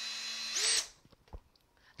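Cordless drill driving a screw through a lazy susan's metal bearing plate into a painted board, running steadily with a held whine and briefly louder just before it stops, just under a second in. A single click follows about halfway through.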